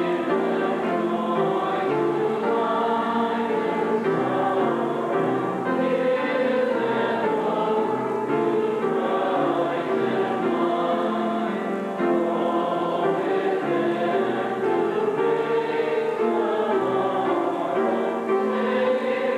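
A church congregation singing a hymn together, many voices holding long sustained notes.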